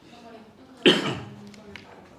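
A single loud cough about a second in, dying away quickly, with faint voices around it.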